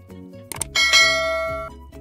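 A quick click, then a bright bell ding that rings out and fades over about a second: the notification-bell sound effect of a subscribe-button animation. Background music with a steady beat runs underneath.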